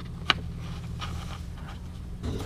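A hand working a bolt and nut behind a car's front bumper: faint handling sounds with one sharp click about a third of a second in, over a steady low hum.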